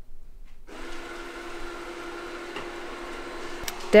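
Yeedi Vac Max robot vacuum-mop running in mopping mode with its suction at standard power. It gives a steady motor whir and hum that starts abruptly under a second in.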